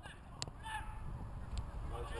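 Outdoor wind rumbling on the microphone. There is a soft knock about half a second in, then a brief, faint, distant call.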